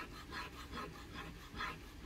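Fingers and fingernail rubbing back and forth over a rubbery Plasti Dip (FullDip) coating on a car panel, testing whether it will scratch off. Faint, even scuffing strokes, about two to three a second.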